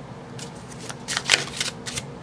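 Paper oracle cards being handled and a card laid down on a tabletop: a few short card slaps and rustles, clustered around the middle.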